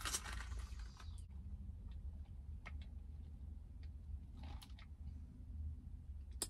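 A drink sipped through a plastic straw: a soft slurp in the first second, then faint small clicks of lips and mouth while tasting, over a low steady hum in a closed car.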